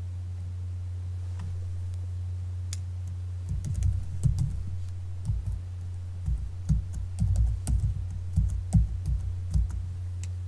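Typing on a computer keyboard: irregular runs of keystrokes starting about three and a half seconds in, over a steady low hum.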